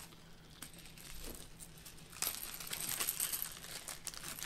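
Small fishing-tackle pieces, such as beads and a rattle, being handled and picked through at a table: soft fiddling at first, then from about two seconds in a quick run of light clicks and rattles.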